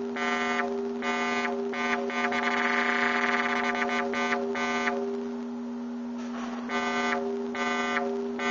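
Synthesizer square-wave tone run through a four-pole vactrol lowpass voltage-controlled filter, its cutoff switched by a square-wave control signal. The steady buzzy pitch alternates between bright and dull about twice a second, with a longer dull stretch past the middle.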